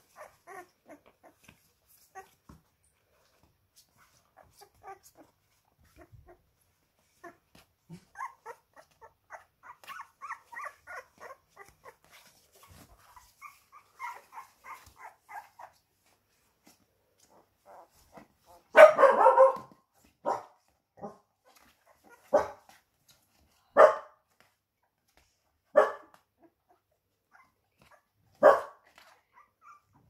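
17-day-old puppies squeaking and whimpering in quick runs of short high calls, then a series of much louder, sharp barks or yelps spaced about one to two seconds apart in the second half.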